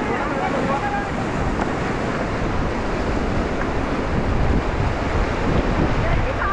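Fast river water rushing and splashing around an inflatable raft, a steady loud wash with wind buffeting the microphone.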